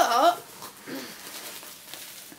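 A man's voice speaking briefly at the start, with a short voiced sound about a second in, then low room sound.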